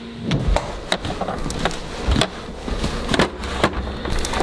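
A door being opened, with a run of irregular clicks and knocks and two low thumps, about half a second and two seconds in. A low steady hum stops just after the start.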